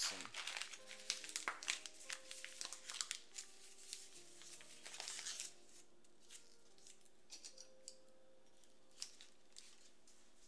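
A crinkly food packet rustling and crackling as it is handled and folded closed. The crinkling is dense for about the first five seconds, then thins to a few scattered crackles and taps. Faint background music runs underneath.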